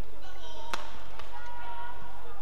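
A badminton racket strikes the shuttlecock sharply, then a fainter tap follows about half a second later. Short high squeaks come from court shoes on the court surface.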